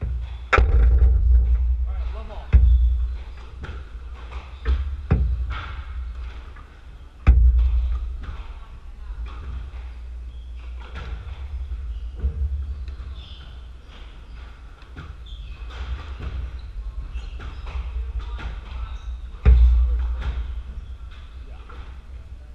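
Squash rally: sharp cracks of the ball off rackets and the court walls, several landing as heavy thuds that echo around the court. The loudest strikes come about half a second in, around 2.5, 5 and 7 seconds, and again near the end, with lighter hits in between.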